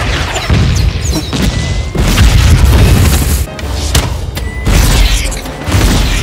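Action-film sound effects of explosions and impacts over a music score: repeated heavy booms, the loudest about two seconds in, with sharp crashes and crackling debris.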